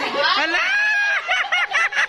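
A woman's long, high-pitched squeal, rising and then held, breaking into a quick string of about five short, high laughs.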